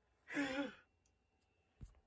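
A person sighs once: a short breathy exhale with a voiced tone that falls in pitch. A faint click follows near the end.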